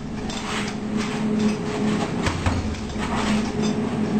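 Gloved punches landing on a heavy punching bag: irregular slaps and thuds at no steady rhythm, over a steady low hum.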